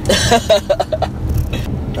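A man laughing in a quick run of short bursts for about the first second, over the steady low rumble of a car's cabin.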